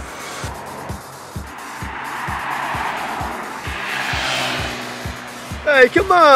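A car passing by on the road, its tyre and engine noise swelling and then fading over several seconds, under background music with a steady beat. Near the end a brief loud sound falls sharply in pitch.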